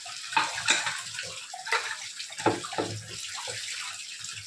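Tap water running and splashing onto a pressure cooker lid being rinsed in a steel sink. Several sharp clatters of metal come through the steady splashing, about four of them in the first two and a half seconds.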